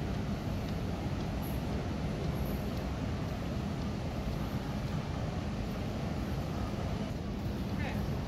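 Steady low hum of a large airport terminal hall, with a faint steady tone and a murmur of distant voices.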